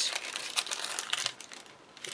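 Double-sided craft tape being pulled and handled over paper card: a rapid crackle of small clicks and crinkles that dies away near the end.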